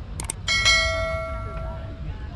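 Subscribe-button sound effect: two quick clicks, then a notification bell ding that rings on with several overtones and fades away over about a second and a half, over low wind rumble on the microphone.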